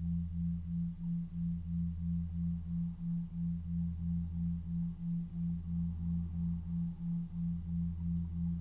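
Steady electronic drone of pure tones: a higher hum pulsing about three to four times a second over a deeper tone that swells and dips every two seconds or so, as in a meditation or healing-frequency background track.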